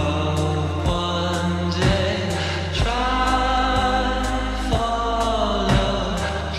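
Song playing: a vocal line sung over a steady beat of about two strokes a second and a deep, sustained bass.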